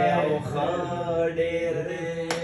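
A man singing a Pashto song unaccompanied, drawing out a wordless melodic line that glides and then holds a long, steady note.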